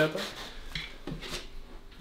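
Faint rubbing and scraping of loose motorcycle parts being handled on a concrete floor as a gear shift lever is picked up from among them.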